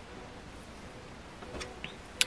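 Quiet room tone: a faint steady hiss, with a couple of small faint clicks near the end.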